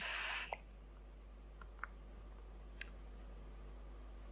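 Hiss of an e-cigarette dripper being drawn on at 30 watts, air rushing through its airflow over the firing coil. It stops about half a second in with a short click, and a few faint ticks follow over low room noise.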